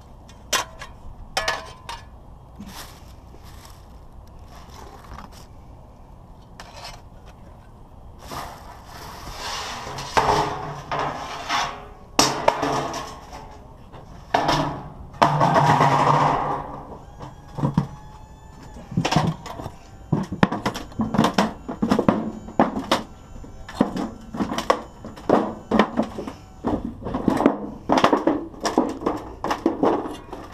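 Galvanized sheet-metal ductwork being handled and flattened: a loud rustling, scraping stretch as it is dragged out, then a quick run of sharp metallic crunches and knocks through the second half as the duct is stomped flat underfoot.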